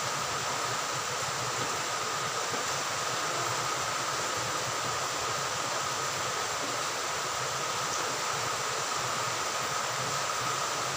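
Pieces of semolina cake dough deep-frying in hot oil in a pan: a steady sizzle, with a faint steady tone under it.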